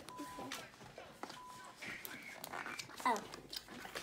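Handling of the iMac keyboard's cardboard packaging as it is slid out of its box: scattered light knocks and rustles, with two brief steady high-pitched tones in the first two seconds.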